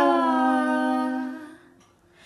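A singer's long held note at the close of a Brazilian popular music (MPB) song, drifting slightly down in pitch and fading out about one and a half seconds in.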